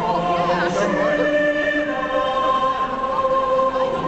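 Orchestra and choir holding long, sustained chords in a slow symphonic intro, the chord changing about a second in.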